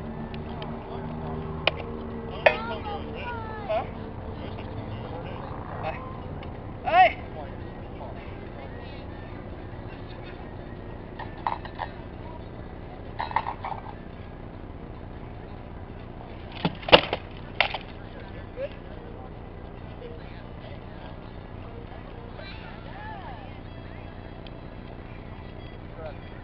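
Rattan weapons striking a shield and armour in armoured sparring: scattered sharp cracks and knocks, the loudest about 17 seconds in. Under them is a low engine hum that fades over the first few seconds.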